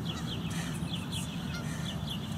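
A bird calling: a quick run of short chirps, each sliding downward, about four a second, over a steady low background rumble.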